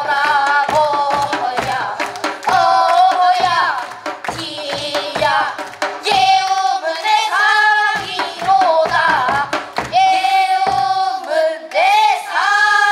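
A song: voices singing a melody over a steady percussive beat, the beat dropping out briefly just past the middle.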